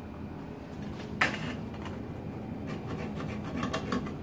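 A marker scratching short marks onto the back of a tile, with one sharp click about a second in and a few lighter ticks near the end.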